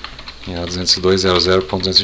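Typing on a computer keyboard: a run of quick keystroke clicks. From about half a second in, a man's drawn-out spoken word is louder than the keys.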